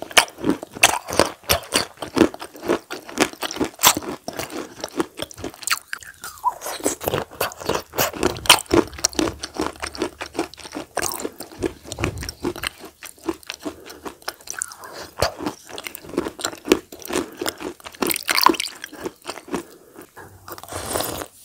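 Close-miked mouth sounds of someone eating spoonfuls of a soft grey food: a dense run of quick, crisp crunches and wet chewing clicks that keeps going with only brief pauses.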